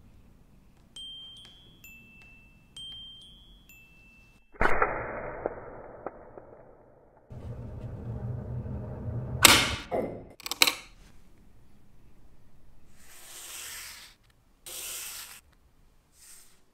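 A short run of chime-like notes, then a sudden loud hit that fades away. After that come two sharp snaps, most likely the miniature wire-spring mouse trap snapping shut, and two short hisses near the end.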